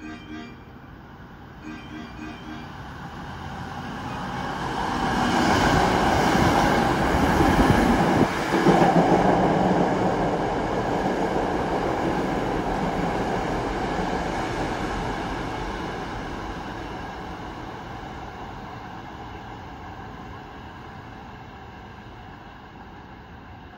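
Hankyu 1300 series electric train passing through a station at speed without stopping: its running noise swells from about four seconds in, is loudest for several seconds with a brief dip in the middle, then fades slowly as the train draws away.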